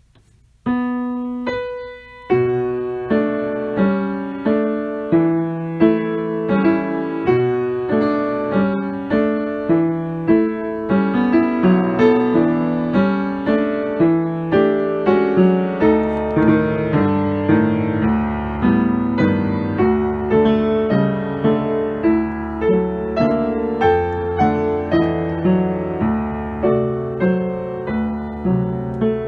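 Solo piano playing a polonaise in 7/8 time, marked marcato. It begins about half a second in with a short opening phrase, breaks off briefly, then runs on in a lurching pulse of accented left-hand chords under the melody.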